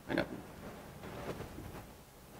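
A man's short, low reply, "I know," right at the start, with a grunt-like sound to it. After it there are only faint, small room sounds.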